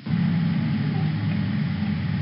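Steady low rumble with a lighter hiss above it, starting right after a brief dropout.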